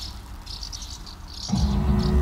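Crickets chirping in short repeated trills. About one and a half seconds in, a louder, low droning music comes in under them.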